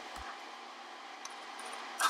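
Faint steady hiss of room tone, with a few faint small ticks about a second and a half in.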